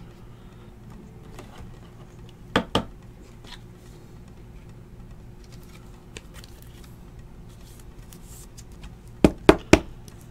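Trading cards handled and flipped through by hand, with faint small clicks, two sharp taps about two and a half seconds in and three more near the end, over a steady low hum.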